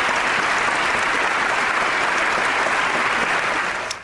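Large audience applauding steadily, a dense continuous wash of clapping hands that cuts off suddenly just before the end.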